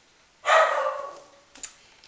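A single bark from a small dog, about half a second in, with a faint click shortly after.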